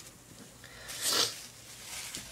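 A short rustling wipe about a second in, a palette knife being wiped clean on a paper towel, with faint small scrapes around it.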